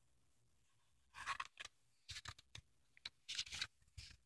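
A paper page of a picture book being turned: a run of short rustles and scrapes of paper, starting about a second in.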